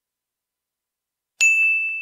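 Silence, then a single bell-like ding about a second and a half in, one clear ringing tone that fades slowly.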